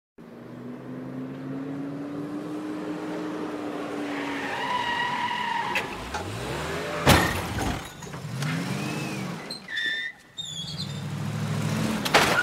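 Opening of a dark drumfunk track, before any beat: sustained tones that bend and glide in pitch, with a sharp crack about seven seconds in and a brief drop-out near the end.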